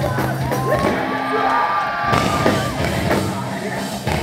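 Rock band playing live at full volume, with drums, guitars and a yelled, held vocal over them, heard from the audience.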